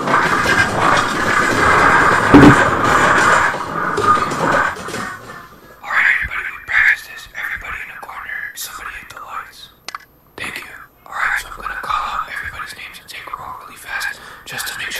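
Whispering and hushed voices. Before them, for about the first five seconds, comes a loud stretch of dense noise with a brief sharp peak in the middle.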